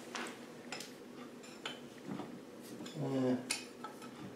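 Scattered light metallic clinks and knocks as an LT77 gearbox's top cover is worked up off its locating dowels.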